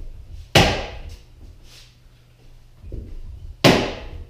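Rattan sword striking a padded pell post twice, about three seconds apart, each hit a sharp crack with a short ringing tail.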